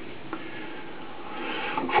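Faint handling noise of hands turning an aluminium diving flashlight, with one light click about a third of a second in, over a steady background hiss.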